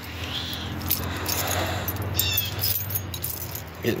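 A large bunch of metal keys on a key ring jangling and clinking as they are turned over in the hand to find the right key, over a low steady hum.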